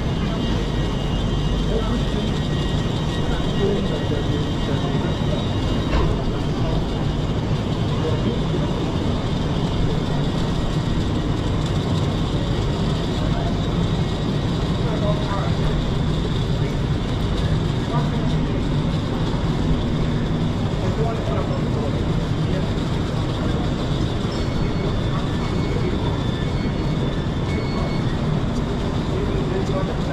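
Underground railway platform ambience: the steady hum of a stationary electric train mixed with the background chatter of passengers walking by. A faint high whine stops about six seconds in.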